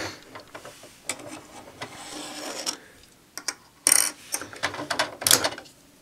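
Plastic toy parts being handled: small clicks and rattles, a short rubbing scrape, then a few sharper, louder clacks as tire pieces are worked on and off the wheels of a plastic toy car.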